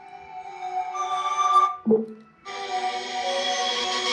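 Music playing through an opened Blitzwolf 2.1 portable speaker with its drivers exposed, growing louder as the volume is turned up, with a short break a little before halfway.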